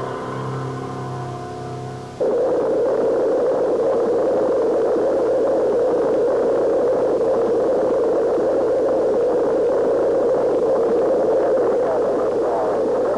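Film music with held notes ends abruptly about two seconds in. It gives way to the loud, steady noise of a Space Shuttle lifting off, its engines and solid rocket boosters heard through an old film soundtrack with little deep bass.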